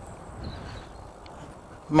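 Steady low rushing noise of a DIY electric bike riding along a tarmac lane, its motorbike tyres on the road and wind over the bike. A single faint click comes just past halfway.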